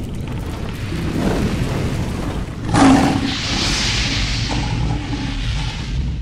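Cinematic intro sound effects: a low rumble building, a sudden boom with a whoosh a little under three seconds in, then a rushing, fire-like hiss that carries on until the logo lands near the end.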